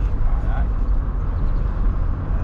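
Steady low rumble of a car's engine, tyres and passing air heard inside the cabin while driving, with a short spoken word about half a second in.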